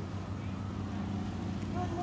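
A car engine running with a steady low hum as a sedan drives slowly forward, with faint voices in the background.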